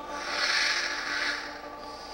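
Roller-skate wheels rolling across the stage floor, a rushing scrape that swells and fades over about a second and a half.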